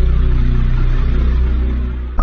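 Low, steady rumbling drone from the soundtrack's sound design, with a hiss above it and a few held low tones, easing off near the end.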